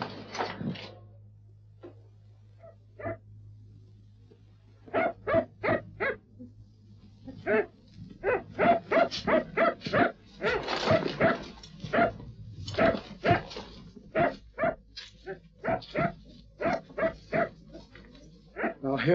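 A dog barking repeatedly: a few faint sounds at first, then short, sharp barks from about five seconds in, coming in quick runs of several a second, over a steady low hum.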